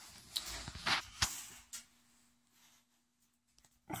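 Handling noise from a phone being picked up and moved: rubbing and a few sharp knocks in the first second and a half, the loudest about a second in.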